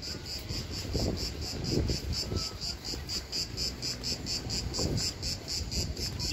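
Insects chirping in a fast, steady pulse, about six chirps a second, with a few soft low thumps.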